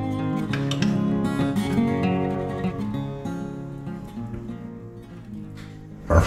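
Background music on acoustic guitar, strummed and picked, fading out over the last couple of seconds.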